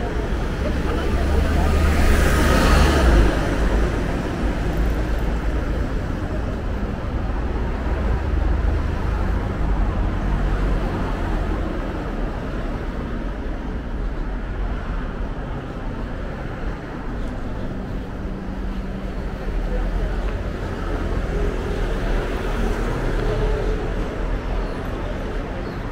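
Road traffic on a busy multi-lane street: cars passing, with a steady low rumble of engines and tyres. One vehicle passes close about two to three seconds in, the loudest moment.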